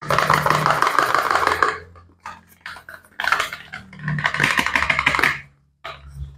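Gloved fingers rubbing, scratching and tapping on a cardboard soap box as it is handled: two long stretches of dense scratchy rustling, with scattered clicks between them and near the end.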